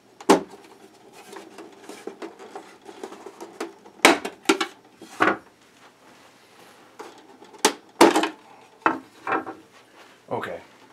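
Hard plastic side panels of a large toy vehicle being unclipped and handled: a scattered series of short clacks and knocks, the loudest about four and eight seconds in.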